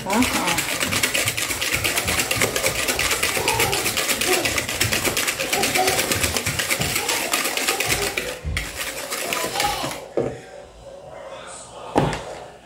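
Wire whisk beating eggs and sugar by hand in a bowl: a fast, even clatter of the wires against the bowl that stops about ten seconds in, followed by a single knock near the end.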